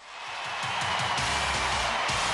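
Loud television theme music with a steady beat, fading up from a brief dip at the start.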